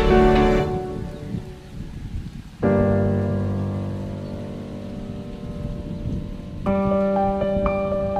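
Slow, soft background music: a sustained chord fades away, a new chord sounds about two and a half seconds in, and another comes in near the end with single notes picked out above it.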